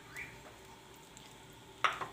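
Oil heating in a frying pan on a gas burner: a faint, steady sizzle. A brief sharp click near the end.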